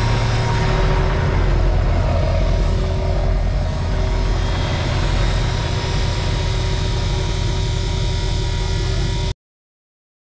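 A tractor engine running steadily with a deep, even hum; the sound cuts off abruptly about nine seconds in, leaving dead silence.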